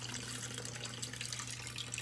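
Aquarium filter running in a turtle tub: a steady splash and trickle of water falling back into the tank, with a steady low hum underneath.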